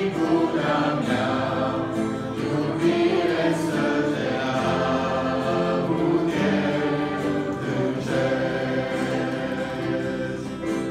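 Mixed youth choir singing a worship song in Romanian, sustained and continuous.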